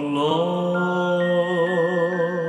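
Slow devotional song: a held vocal note over soft accompaniment, with bell-like chime notes coming in one after another about halfway through.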